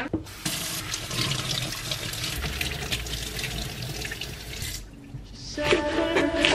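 Kitchen tap running into a stainless steel sink as a tomato is rinsed under the stream, the water splashing steadily. The water stops about five seconds in, and background music comes in near the end.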